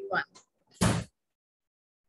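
A woman's voice ends a word, then about a second in a single short, sharp bump comes through a video call's audio.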